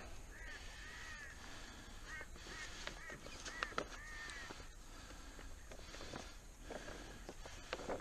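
A bird calling in a faint series of short, arched calls, several of them in the first half, over light handling clicks.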